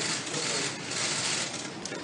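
Steady background noise of a large, busy hearing room: an even hiss-like murmur of people and movement, with no one speaking into a microphone.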